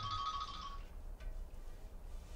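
A steady, high-pitched held tone that fades away about a second in, leaving a faint low room hum.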